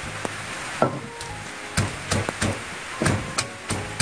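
Wooden pestle pounding sliced lemongrass, fresh chillies, garlic and shallots in a clay mortar to make curry paste. The strikes begin about a second in and come irregularly, roughly three a second.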